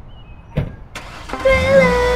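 A thump and two sharp clicks, then a car engine starts about one and a half seconds in and runs with a low steady rumble. Music with a held tune starts over it at the same moment.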